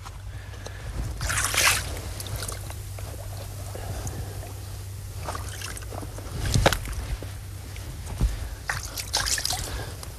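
Shallow creek water sloshing and splashing in short bursts as a person in waders works a foothold trap into a muddy pocket at the water's edge, with a steady low hum underneath.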